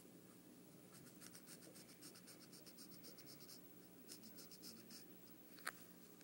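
Pencil scratching faintly on lined notebook paper as maze lines are drawn, in two runs of quick, short strokes. A single sharp click near the end is the loudest sound.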